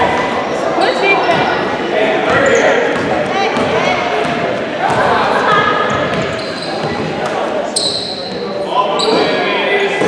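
Basketball being dribbled on a hardwood gym floor during play, with spectators' and players' voices echoing around the hall and two brief high squeaks late on from sneakers on the court.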